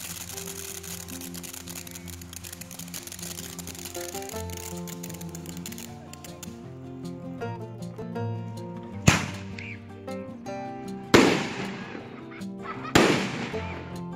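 Consumer fireworks over background music: a ground fountain firework hisses and crackles through the first several seconds, then three sharp bangs about two seconds apart, each trailing off in a crackle, as aerial shells burst overhead.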